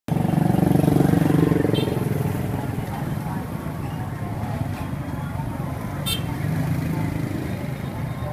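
Street ambience: a motorcycle engine running close by, loudest in the first two seconds and again near the end, with voices in the background and a brief click a little after six seconds.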